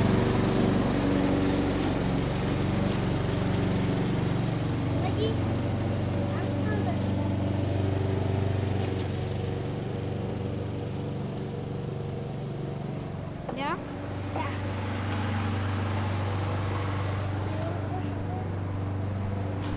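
Gasoline walk-behind lawn mower engine running steadily, growing fainter over the first dozen seconds as the distance grows.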